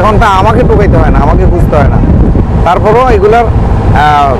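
A man talking over a loud, steady low rumble from the river launch he stands on, mixed with wind on the microphone.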